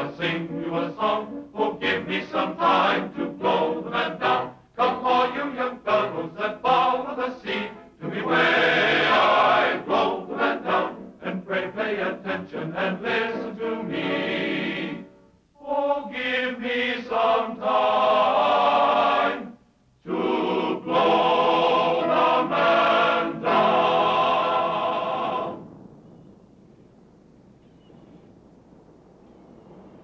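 A chorus of voices singing a sea chanty, in short rhythmic phrases at first and then long held notes. The singing stops a few seconds before the end, leaving only a faint hiss.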